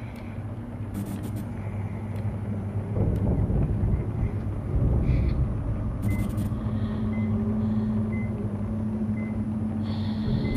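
Low, steady rumbling drone of a horror-film room ambience. About six seconds in, a steady low hum joins it, with short faint high beeps roughly once a second and a few brief crackles.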